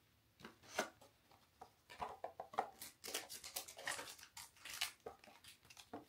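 Cardboard box and card packaging being handled: a scatter of light taps and rustles.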